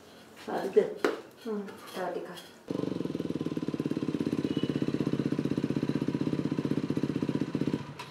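Dirt bike engine running at idle with a steady, fast putter. It starts abruptly about three seconds in and cuts off just before the end.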